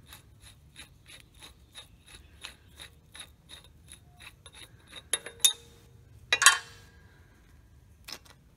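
Light metallic clicking, about three clicks a second, as the large outer spindle nut on a 2.5-ton Rockwell front axle is spun off its threads by hand with a three-inch eight-point socket. After about five seconds the clicking stops and there is a short metallic clink, then a louder ringing clank of steel parts knocking together, the loudest sound.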